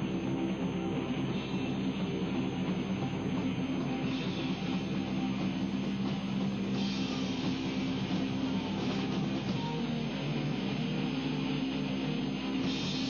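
Rock music with guitar, dense and steady with no breaks.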